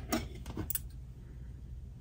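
A few light clicks and taps in the first second as a metal crochet hook is set down on the table and scissors are picked up, then quiet room tone.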